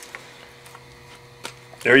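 Broken plaster investment mould being picked and crumbled off a freshly cast aluminium plug by gloved hands: a few faint clicks and scrapes over a steady low hum, then a man's voice starts near the end.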